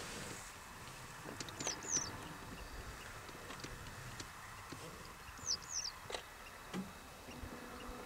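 European goldfinch giving short, high two-note calls, twice a few seconds apart, with scattered faint clicks.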